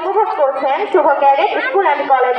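Only speech: people talking close by, with chatter around them.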